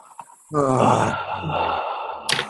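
A person breathing out with a deliberate deep sigh, starting about half a second in: a voiced tone falling in pitch that trails off into a long breathy exhalation.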